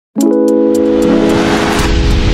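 Intro music for an animated logo: a sustained chord that starts suddenly, with sharp high ticks over it and a noise swell building toward the end.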